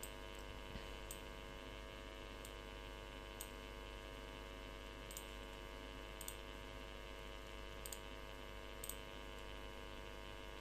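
Steady electrical hum picked up by the recording microphone, with about eight faint mouse clicks spaced through it as windows are opened and closed.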